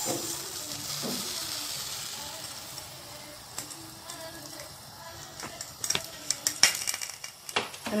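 Dry granulated sugar pouring from a glass into a stainless steel pan, a hiss that fades over the first few seconds as the pour ends. A few sharp clicks and knocks follow in the second half.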